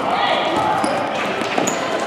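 Indoor futsal game on a gym's hardwood floor: indistinct voices of players and onlookers echoing in the hall, with brief sneaker squeaks and the ball being played on the floor.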